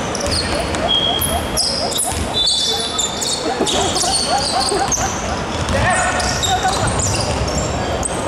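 Basketball play on an indoor hardwood court: sneakers squeaking again and again in short high chirps, with the ball being dribbled, in a large echoing hall.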